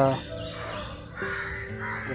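Crows cawing, two harsh calls in the second half, over background music holding a steady note.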